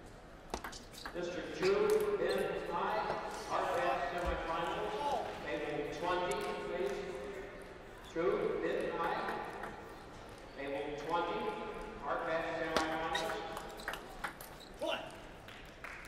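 Voices talking in a large hall, with a few sharp clicks of a table tennis ball being struck.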